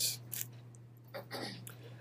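Quiet room tone with a steady low electrical hum, a few faint clicks near the start and a brief faint murmur of voice about a second in.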